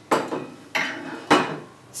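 Copper still column and its perforated sieve being set down on a countertop: three sharp metal knocks, a little over half a second apart.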